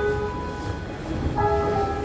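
Show choir music: a sustained chord of voices and accompaniment, held steady, that thins out soon after the start, with a new held chord coming in about a second and a half in.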